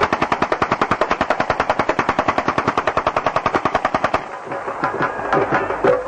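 A rapid, evenly spaced string of sharp bangs, about ten a second, that runs for about four seconds and then stops.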